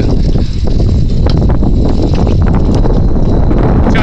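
Wind buffeting the microphone of a handlebar-mounted camera on a moving bicycle: a loud, steady low rumble with road noise, and a few light ticks from the bike.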